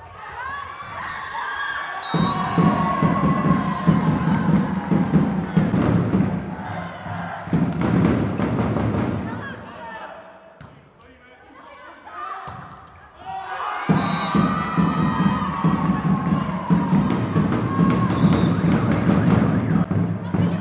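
Crowd in a sports hall chanting to a steady drum beat, in two long stretches with a lull of about three seconds in between.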